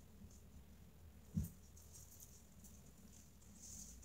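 Mostly quiet: faint rustling of a cloth rubbing a small dog's paws, with one soft thump about a second and a half in.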